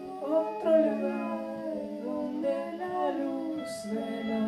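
Live band music with electric guitars and keyboards: a sustained melodic line slides up and down over a held low note. A brief hiss sounds near the end.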